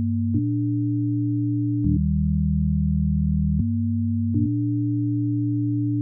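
Software synthesizer in Reason playing sustained low, nearly pure tones in chords that change every second or two, with a short click at each change.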